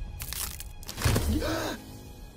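Cartoon sound effect of a carved wooden staff cracking and splintering apart, with a low rumbling groan about a second in.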